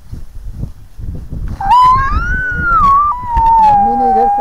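One long, high-pitched call begins about a second and a half in. It rises, drops slightly and then holds a steady pitch. It plays over a low rumbling rustle.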